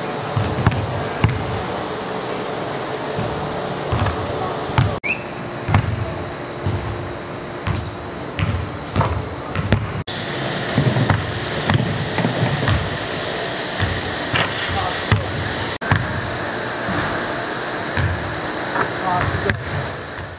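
A basketball bouncing repeatedly on a gym floor in a large indoor hall, with a series of dull thuds, short high squeaks in between, and a few abrupt edit cuts.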